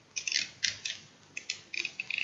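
Yellow snap-off utility knife being readied to cut the plastic packaging: a series of short, sharp clicks, about eight in two seconds in uneven groups, as its blade is slid out.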